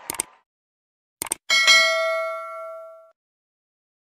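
Subscribe-button sound effect: a pair of mouse-style clicks, another pair about a second later, then a bright bell ding that rings for about a second and a half.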